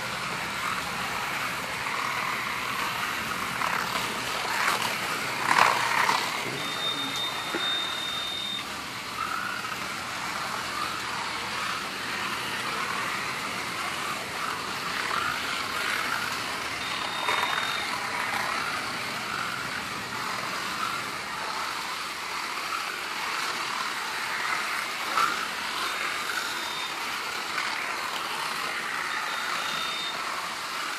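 Slot cars racing around a multi-lane track, their small electric motors whining steadily and wavering in pitch as the drivers work the throttles. A short high electronic beep sounds several times, the longest about seven seconds in, and there is one louder sudden knock about five to six seconds in.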